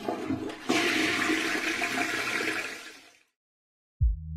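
A toilet flushing: rushing water that swells a little under a second in, then drains away and fades out after about three seconds.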